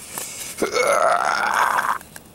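A man's drawn-out, throaty vocal sound, starting about half a second in and lasting well over a second.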